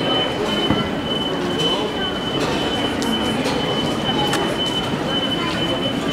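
Busy pedestrian street ambience: a murmur of many people's voices with scattered clicks and knocks, under a thin, steady high-pitched whine that runs throughout.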